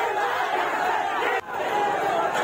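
A large crowd of protesters shouting together, a dense mass of many voices. It breaks off for a moment about one and a half seconds in and picks up again.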